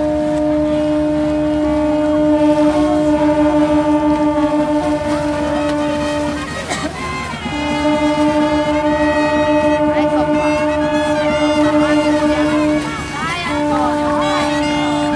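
Ships' horns sounding long, loud, steady blasts. They break off briefly about six and a half seconds in and again near the end, with people's voices over them.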